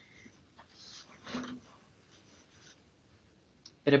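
Mostly quiet room noise over a video-call microphone, with faint rustling and one short soft sound about a second and a half in, before a voice starts up at the very end.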